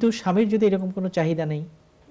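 Speech only: a man talking steadily in Bengali, with a brief pause near the end.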